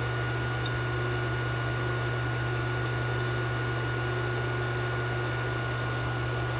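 A steady low hum with a thin, faint, high-pitched whine above it, and a few faint ticks.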